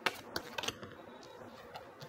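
A few light clicks in the first moment or so, then quiet room tone.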